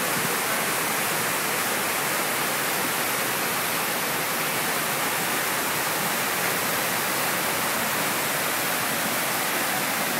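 Water cascading down the stepped tiers of a concrete park waterfall: a steady, even rush with no let-up.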